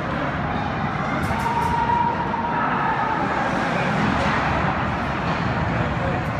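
Hockey rink ambience during play: a steady din of crowd and game noise filling the arena, with a few sharp clicks about a second and a half in.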